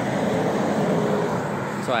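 Road traffic noise: a vehicle passing on the highway, heard as a steady rush of tyre and engine noise that slowly eases.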